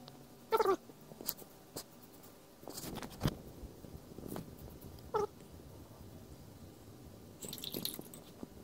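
A plastic bag rustling and crinkling as it is handled, with two short, high vocal calls: one about half a second in and one about five seconds in.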